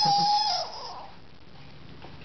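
A young child's long, high-pitched squeal, an imitation of a 'squeak', held on one steady pitch and ending about half a second in; then only quiet room noise.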